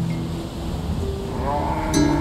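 A single long moo from cattle in the second half, its pitch rising and then holding, as soft music fades out at the start.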